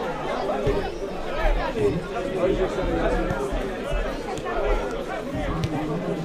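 Many spectators' voices chattering at once at a football ground, overlapping with no single voice standing out.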